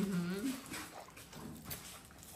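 A man's short hummed 'mmm' of enjoyment, rising in pitch at its end, then faint sucking and smacking clicks as he eats a frozen coconut charamusca from its small plastic bag.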